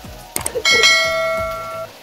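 A metal bell struck twice in quick succession, its clear ring fading away over about a second.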